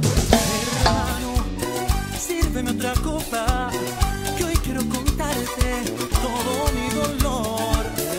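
Upbeat Latin dance music with live timbales, cowbell and cymbal strokes playing a steady rhythm over a melodic backing mix.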